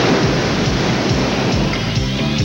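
Ocean surf crashing, a loud, steady rushing noise of breaking waves.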